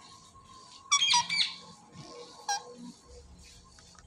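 Indian ringneck parakeet giving a short, high squeaky chirp about a second in, followed by a single brief chirp a second and a half later.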